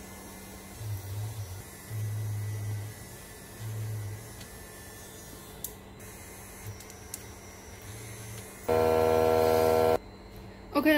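Handheld electric OCA remover tool, a small rotary motor with a rubber head, buzzing in short spurts as it rubs optical adhesive off phone screen glass, over a steady mains hum. Near the end a much louder, steady buzz starts suddenly and runs on.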